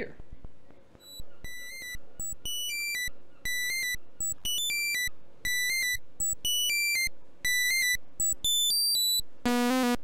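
SSI2131-based Eurorack VCO playing a sequenced run of short, high-pitched beeping notes, about two a second, each with a quick step in pitch. Near the end a much lower sawtooth line, rich in overtones, comes in as the oscillators are patched in parallel. Faint clicks of patch cables being plugged run underneath.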